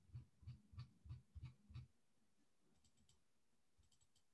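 Faint tapping on a computer keyboard: six soft keystrokes about three a second, then a few lighter clicks near the end.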